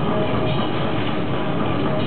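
Death metal band playing live at full volume: a loud, dense, unbroken wall of heavily distorted guitars and drums.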